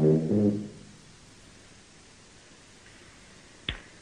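A sousaphone holds its last low brass notes for under a second and then stops, leaving quiet room tone; a single short click comes near the end.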